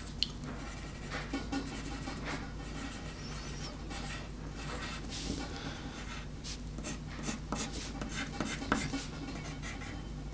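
Wooden pencil scratching across paper in short, irregular strokes while sketching, with a sharp tap about a quarter second in.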